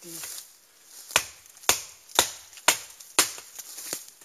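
Cold Steel Trailmaster's thick blade chopping into a dead quaking aspen trunk to notch it: five sharp blows at a steady rhythm, about two a second.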